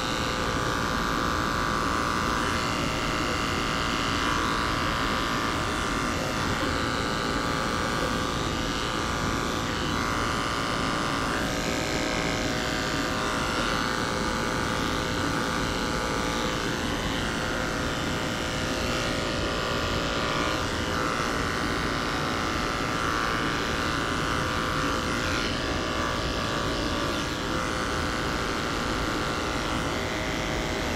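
Electric dog grooming clippers running steadily as the blade trims the hair around a dog's paw, the hum rising and falling slightly as it moves through the coat.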